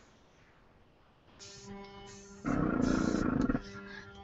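A small air compressor driving a marker airbrush runs with a steady hum and an air hiss, louder for about a second in the middle. It is heard while the air pressure is being turned down, after about a second and a half of silence.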